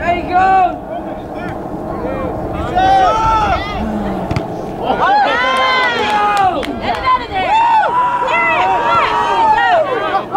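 Spectators and players shouting over one another during a soccer match, the words unclear. A burst of many voices comes about five seconds in, and one long drawn-out shout is held near the end.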